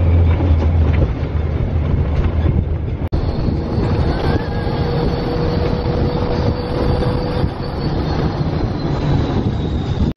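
Heavy wind rush and low rumble of an open-top Test Track ride vehicle running at high speed on its outdoor track. The sound breaks off for an instant about three seconds in.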